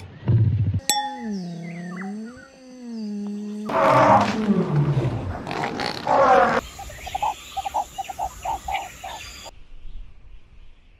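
Wild animal calls edited back to back, among them a lion roaring: a low grunt, then a long wavering call, then a loud call that falls in pitch over about two seconds, then a quicker pulsing call with a high whine until shortly before the end.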